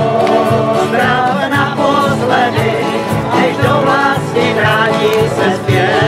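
Group of men and women singing a country-style tramp song together, accompanied by several strummed acoustic guitars and a homemade washtub-style bass made from a plastic canister and a pole, with a steady strummed beat.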